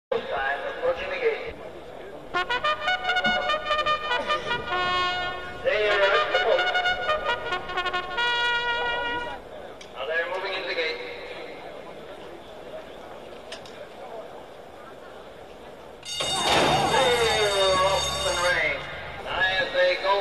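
A trumpet call in short, held notes, alternating with stretches of voices. A louder stretch of voices begins about sixteen seconds in.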